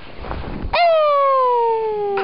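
Low rustling, then about three-quarters of a second in a toddler lets out one long wail that slides steadily down in pitch.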